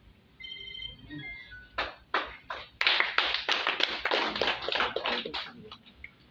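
A short electronic jingle of high beeping notes that steps down in pitch, like a phone ringtone. It is followed by a group of people clapping: a few claps at first, then a burst of applause lasting about three seconds.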